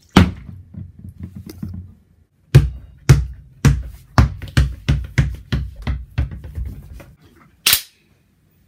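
A plastic water bottle hits a wooden floor with a loud knock and clatters briefly. Then feet thump on the wooden floor, about two a second and quickening, ending with a single sharp snap.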